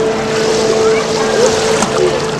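Pool water splashing and churning around a small child swimming, over a steady hum.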